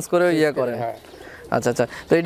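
Domestic pigeons cooing, heard together with a man's talk.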